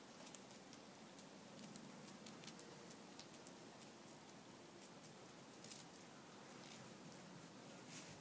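Near silence: faint outdoor room tone with a few scattered faint clicks, the clearest a little before six seconds in.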